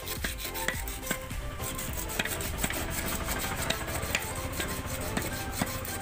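Irregular hammer taps on a steel bearing housing as a new oil seal is driven into a tractor's rear axle housing, over background music.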